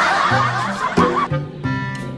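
A burst of several people laughing over background music, fading out just over a second in and leaving the music alone.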